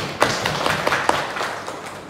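Audience applauding: a dense patter of hand claps that dies away toward the end.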